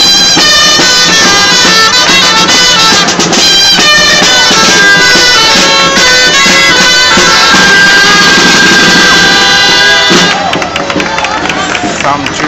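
A Catalan street band of gralles (shrill folk shawms) and a drum playing a dance tune, loud and reedy. About ten seconds in the music drops back and the crowd can be heard.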